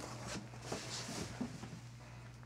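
Faint handling sounds of plastic containers being moved about in a cardboard box: light rustling and a few soft knocks, over a low steady hum.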